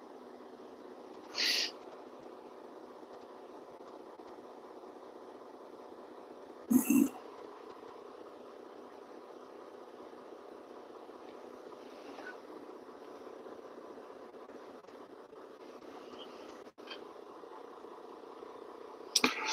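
Steady hum of a semi-truck idling, heard from inside the cab. A brief higher noise comes about one and a half seconds in, and a louder short double sound about seven seconds in.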